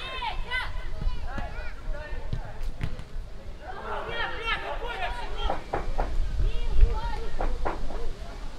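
Players' voices shouting short calls to each other on an outdoor football pitch, with a few sharp thuds of the ball being kicked and a low rumble underneath.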